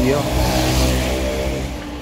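A moped's engine running as it passes close by, its noise swelling and fading within the first second or so, over a steady engine hum.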